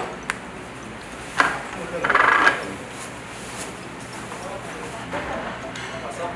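A metal fork clicking and scraping against ceramic bowls while someone eats, with a few sharp clicks near the start and a louder clatter about two seconds in.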